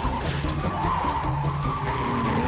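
Cartoon race-car sound effect of tyres screeching, a steady wavering squeal, laid over music.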